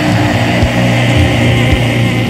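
Doom metal band recording: heavily distorted electric guitars and bass holding a low, sustained chord, with a drum hit about every half second.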